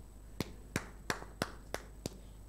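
Finger snapping in a steady rhythm, about three sharp snaps a second.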